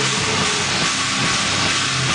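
Loud heavy rock band playing live: distorted guitars, bass and drums blur into a dense, unbroken wall of noise with low notes shifting underneath.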